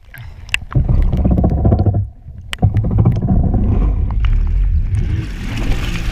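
Stand-up jet ski being crashed, heard from a camera on the craft: a rough, loud low rumble of engine and churning water, with splashes and knocks. The sound drops away at the very start and again for a moment about two seconds in.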